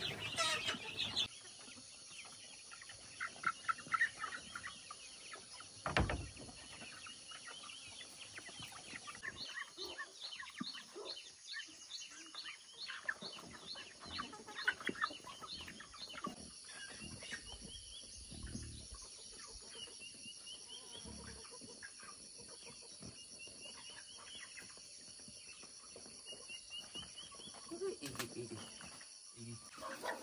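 Chickens clucking and chicks peeping, with a regular run of quick high peeps for several seconds in the middle. A single sharp knock comes about six seconds in, and a steady high hiss runs behind.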